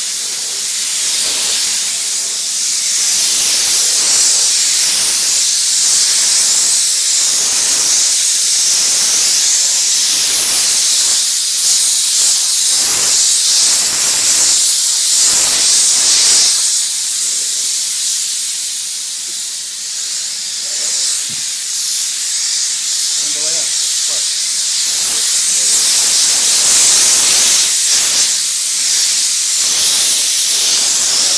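Pressurized spray hissing steadily on a car during a wax service, swelling and easing again and again as the stream moves, with a short lull a little past the middle.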